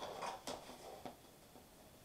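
Paper rustling and crinkling with two or three sharp crackles as a greeting-card envelope is opened and handled; it dies down after about a second.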